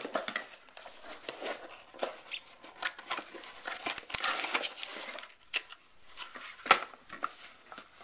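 Cardboard mailer box being handled and opened by hand: flaps rustling and scraping, with scattered light clicks and one sharper knock near the end.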